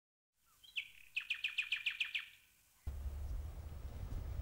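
A bird calling: one note, then a quick run of about ten short chirps, each falling in pitch, lasting about a second.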